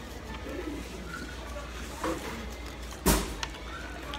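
Fast-food restaurant background ambience with a steady low hum, broken by a sharp thump about three seconds in, after a lighter knock a second earlier.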